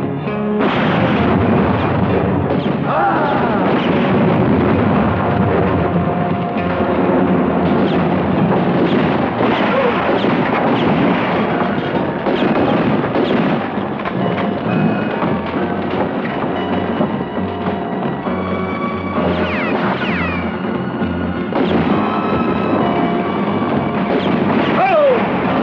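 Film score playing over a gunfight soundtrack, with repeated gunshots and booms throughout.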